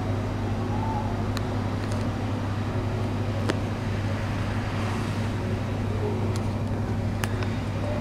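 A steady low mechanical hum at an even level, with a few faint clicks spread through it.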